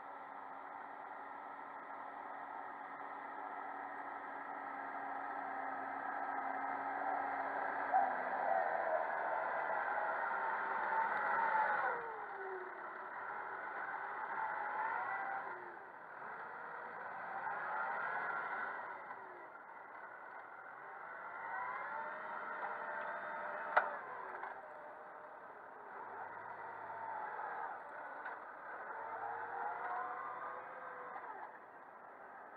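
New Holland TS115 turbo tractor's diesel engine working under load while pulling a plough, growing steadily louder as it comes closer. About twelve seconds in the engine note falls, and after that it rises and falls several times. Two short sharp knocks stand out, one early on and one about three quarters of the way through.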